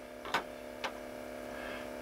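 Two small sharp clicks about half a second apart over a steady, faint electrical hum.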